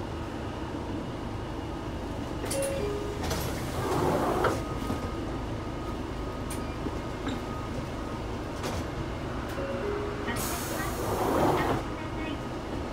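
Inside a Hino Blue Ribbon II city bus: steady low engine and road rumble, with a short two-note falling electronic chime heard twice. There are bursts of air hiss, the loudest about two-thirds of the way in and again near the end.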